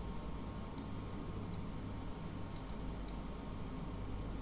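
A few faint, irregularly spaced computer mouse clicks over a low steady hum.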